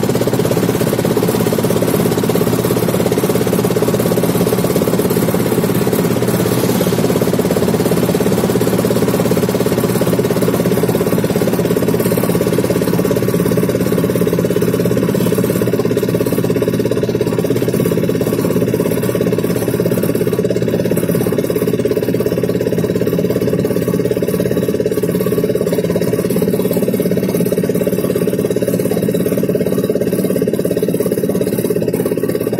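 Engine of the vehicle being ridden in, running at a steady speed with a constant-pitched drone and road noise, heard from on board while driving.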